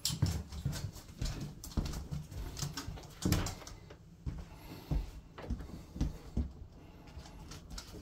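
A spaniel's claws clicking and tapping irregularly on a laminate floor as it trots along, mixed with a person's footsteps.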